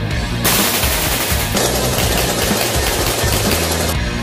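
Background music with a dense, continuous rattle of rapid gunfire layered over it from about half a second in.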